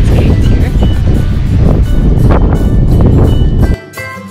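Strong wind buffeting the microphone, a loud, rough low rumble that cuts off suddenly near the end, where Latin guitar background music takes over.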